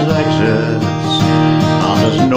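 Acoustic guitar strummed in a steady rhythm, its chords ringing between sung lines.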